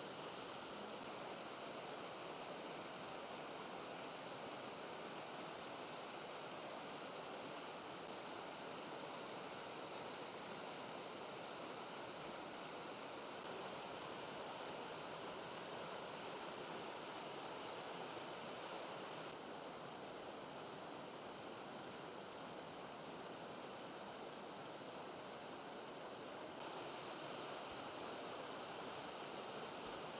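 Spring-fed mountain stream running over rocks: a steady wash of water noise that changes slightly in tone a few times.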